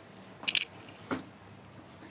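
Quiet small-room tone broken by two brief, soft noises, about half a second and a second in.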